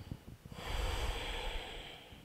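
A person breathing out audibly through the nose: one long breath of about a second and a half, starting about half a second in. The breath is slow and deep, held in a floor stretch.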